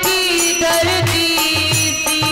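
Hindi devotional bhajan: a woman's sung melody over held accompanying notes and a repeating low drum beat.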